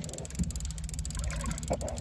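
Steady low wind rumble on the microphone aboard a small boat on open water, with a brief faint knock near the end.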